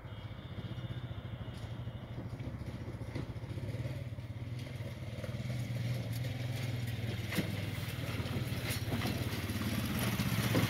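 A small engine running steadily with a fast, even low throb, slowly growing louder, with a couple of sharp clicks in the second half.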